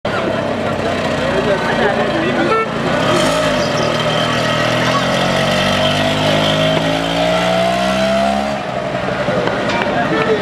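A motor vehicle's engine running and rising steadily in pitch for several seconds as it accelerates, then cutting off about eight and a half seconds in, with voices in the background.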